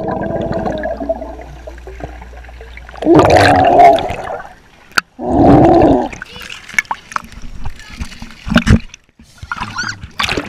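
A child's voice heard through water by a submerged camera, muffled and low, with two loud drawn-out calls about three and five seconds in. Bubbling and splashing follow, with scattered sharp clicks near the end.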